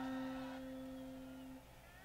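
A single plucked guitar note left ringing, one steady pitch slowly fading out and gone by near the end, amid sparse isolated plucks typical of a guitarist tuning up between songs.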